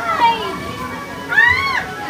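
Children's high-pitched shouts at play: a short call at the start and a louder, longer rising-and-falling squeal about one and a half seconds in, over general chatter.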